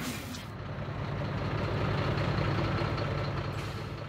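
Heavy truck engine running steadily, a low hum that grows a little louder about a second in.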